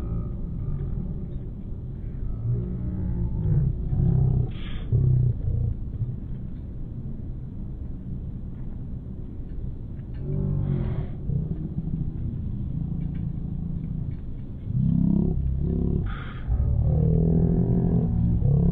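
Uneven low outdoor rumble beside parked tour buses, with the voices of a crowd of pilgrims walking past rising briefly a few times.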